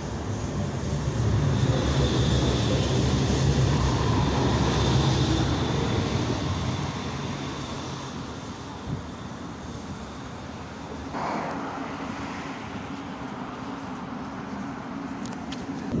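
Pesa low-floor tram pulling into a platform and braking to a stop, its running and motor whine loudest over the first few seconds, then settling into a quieter hum while it stands. A short tone sounds about eleven seconds in.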